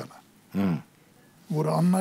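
A man speaking in Armenian, with a pause: one short vocal sound, rising then falling in pitch, about half a second in, then he resumes talking near the end.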